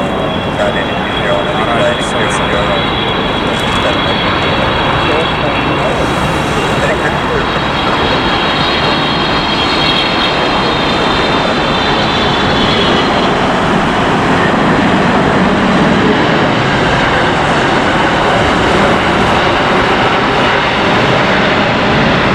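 Jet noise from an Air China Cargo Boeing 777 freighter's GE90 engines as it lands: steady, loud noise with a high whine over it that fades out about halfway through, around touchdown, and then continues as the aircraft rolls out.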